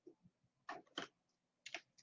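A few faint, short scratches of a coloured pencil writing on notebook paper, at near silence.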